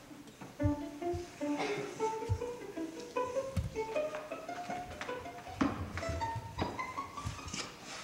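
Live instrumental accompaniment of a staged opera, with no singing: a melody of short, detached notes stepping up and down over separate low bass notes.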